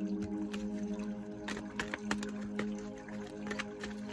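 Tarot cards being shuffled by hand, a scattering of short card taps and slaps, over background music of steady held notes.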